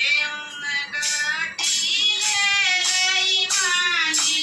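A woman singing a Haryanvi devotional bhajan, the voice starting suddenly at the very beginning and held in long, high sung notes.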